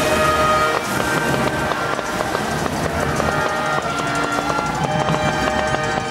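LPG-fired pyrophone (flame organ) sounding several sustained pipe notes together, the chord shifting a few times, over a steady rough noise from the burning gas.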